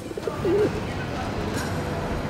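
A feral pigeon cooing once, a short low call that bends up and down about half a second in, over steady background noise.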